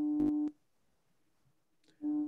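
A short, steady hummed 'mmm' in a man's voice, with one sharp click partway through. After about half a second it stops and there is silence.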